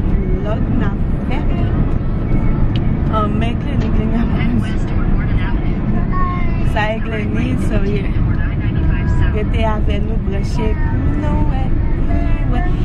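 Steady road and engine rumble inside the cabin of a moving car, with voices talking over it.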